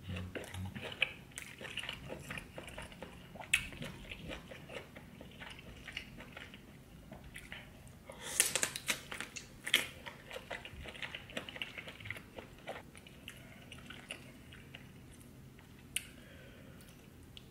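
Close-miked eating of sauce-covered seafood boil: wet bites, chewing and mouth smacks, with a cluster of louder, sharper bites about eight seconds in.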